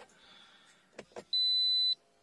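Two short clicks, then a single steady high-pitched electronic beep of about half a second from a Toyota RAV4's instrument cluster, the chime that comes as the oil maintenance reset finishes.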